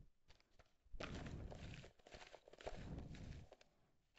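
Tarot cards being handled on a table: two short stretches of faint rustling and sliding as the cards rub against each other, the first about a second in and the second in the latter half.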